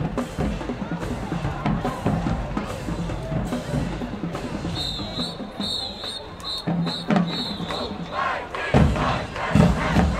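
High school marching band drumline playing, with a cheering stadium crowd. A high, repeated whistle-like trill sounds for a couple of seconds midway, and heavy bass drum hits come near the end.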